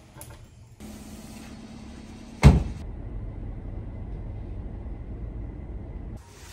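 A car door shuts with a loud thud about two and a half seconds in, followed by the steady low rumble of the car heard from inside the closed cabin.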